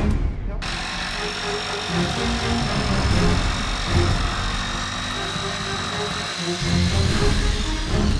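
Electric jigsaw cutting a curve through a chipboard panel: a steady buzzing whine that starts abruptly about half a second in and dies away near the end, with background music underneath.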